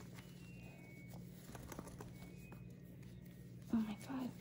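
Faint small clicks and handling noise of fingers working diamond-painting placer tips out of a velvet drawstring pouch, over a steady low hum, with a brief vocal sound near the end.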